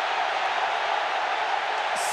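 A packed football stadium crowd cheering steadily in celebration of the winning penalty in a shoot-out.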